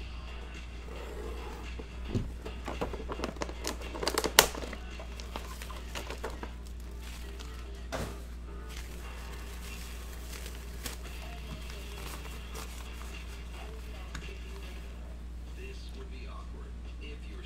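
Crinkling and rustling of a shiny gold metallic drawstring pouch and its card box being handled, busiest from about two to four and a half seconds in with one sharp crinkle, then a single click near eight seconds. Faint background music and a low steady hum run underneath.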